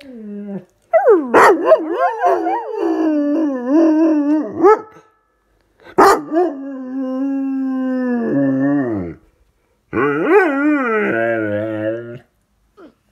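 A dog 'talking' in long howling, yodelling vocalisations: three drawn-out bouts whose pitch slides up and down. The middle bout holds a steadier tone before falling away at its end.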